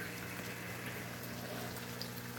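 Steady, soft bubbling of aeration from an air line in a small shrimp pond, with a low steady hum underneath.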